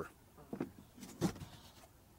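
A few light knocks as a black plastic board is turned over and set onto cinder blocks, the loudest about a second and a quarter in.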